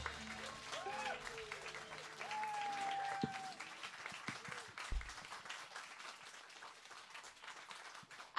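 Small audience clapping after a rock band's song ends, with a couple of voices calling out in the first few seconds; the clapping is faint and thins out toward the end.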